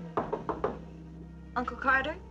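A quick series of about four knocks on a wooden door, followed near the end by a short burst of a voice.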